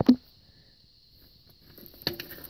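Handling noise from a handheld camera being moved: a short knock right at the start, then faint rustling.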